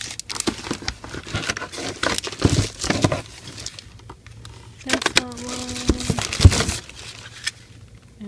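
Plastic packaging and cellophane-wrapped boxes crinkling and rustling as cosmetics are rummaged through in a cardboard shipping box, in two spells, the first in the opening seconds and the second past the middle.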